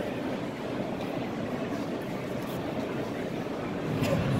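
Steady background din of a busy exhibition hall, an even murmur with no distinct event.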